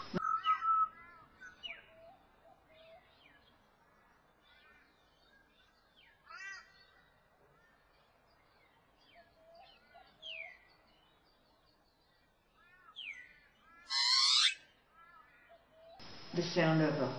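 Pied butcherbird singing: scattered clear whistled notes and quick downward-sliding whistles, with one louder, harsher sweeping call near the end.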